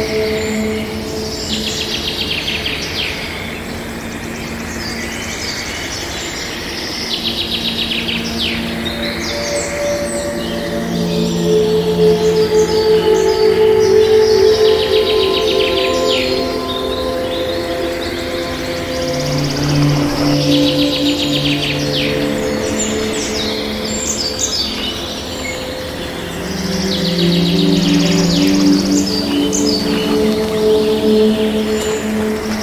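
Calm background music of long held notes, mixed with small songbirds chirping and trilling in short runs about every five seconds.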